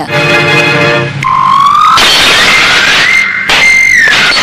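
Film sound effects: a short held horn-like chord, then a whistling tone that glides up and holds high over a loud, noisy smash of breaking glass.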